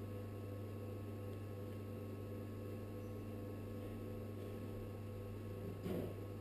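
Electric potter's wheel running with a faint, steady low hum.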